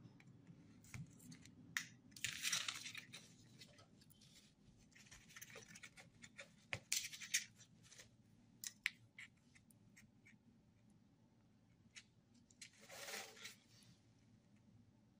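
Scattered light clicks and short bursts of scraping and rustling as a circuit board and its wires are handled and slid about on cardboard, with a faint steady hum underneath.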